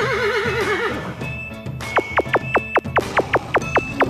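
A horse whinny sound effect, its pitch wavering up and down, fades out about a second in over background music. From about two seconds in comes a quick run of short falling zips, about five a second.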